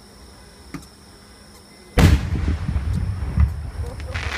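An aerial firework shell bursts with a sudden loud boom about two seconds in, followed by a low rumbling echo that carries on.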